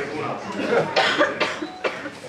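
Men's voices talking in a gym hall, with a few short sharp sounds in the second half.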